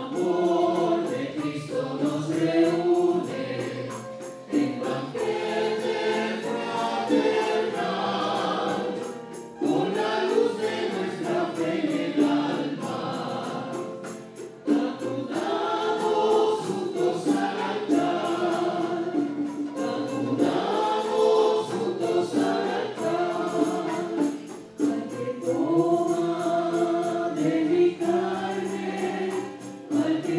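A choir singing a communion hymn with musical backing, in sung phrases with short breaks between them.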